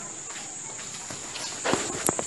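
Room noise with a steady high hiss, and a few short knocks near the end.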